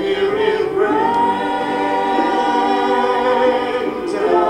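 Voices singing a slow worship song together, holding one long sustained note after about the first second.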